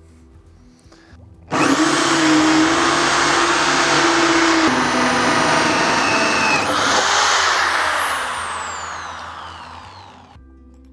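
Electric drill driving a hole saw through a wood board. The motor starts suddenly about a second and a half in and runs steadily under cutting load, with a change in tone midway. From about seven seconds it is let off and winds down with a falling whine as the fading cut finishes the through-hole.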